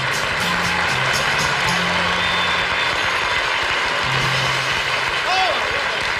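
Studio audience applauding as a band plays out the end of a 1960s pop-rock song, with electric bass notes under the clapping.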